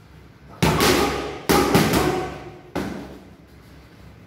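Boxing gloves striking focus mitts: four sharp smacks, the middle two in quick succession, each echoing briefly in the hall.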